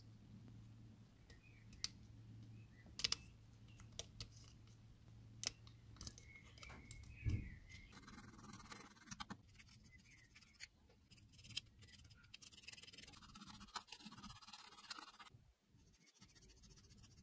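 Hobby nippers snipping moulded detail off a plastic model cockpit part, a series of faint sharp clicks. From about halfway, a small file rasps steadily on the plastic to smooth down what is left, stopping just before the end.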